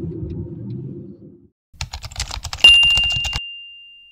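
Low rumble of road noise inside a moving car, cutting off about a second and a half in. Then an end-screen subscribe-animation sound effect: a quick run of clicks and a single bright bell ding that rings out slowly.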